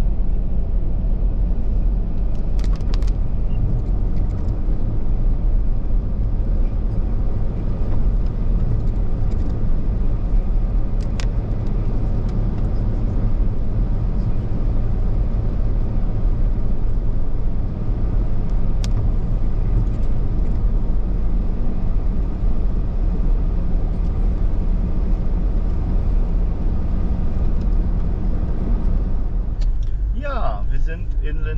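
Car driving on a wet road, heard from inside the cabin: a steady low rumble of tyres and engine, with a few faint ticks.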